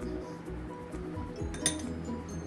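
Background music, with one sharp clink of tableware, as of a ceramic plate being touched, about three-quarters of the way through.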